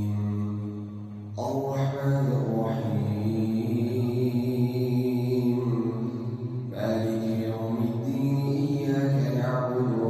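An imam reciting the Quran aloud in a slow, melodic chant over a microphone during prayer. A long held note fades out about a second in, and new phrases begin just after and again near the seven-second mark.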